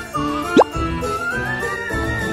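Cheerful background music with a light melody over a bouncy beat, and a little past halfway a short, quick upward-sliding pop sound, the loudest moment.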